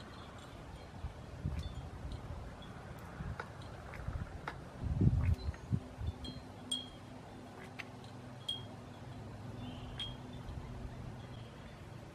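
Wind chimes ringing lightly: a sparse scatter of single high tinkles, one every second or so, with a brief low rumble about five seconds in.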